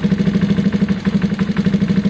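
Gilera DNA 125's single-cylinder four-stroke engine idling steadily with an even pulsing beat. The idle has settled lower, which the owner takes to mean the sealed-up hole is no longer letting air in.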